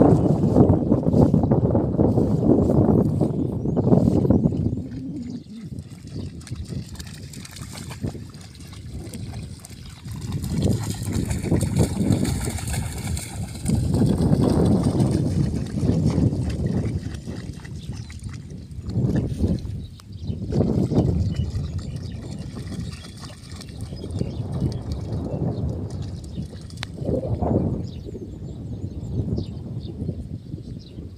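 Low rumbling noise swelling and fading every few seconds, like wind buffeting the microphone, with dogs wading and splashing through shallow floodwater in a rice field.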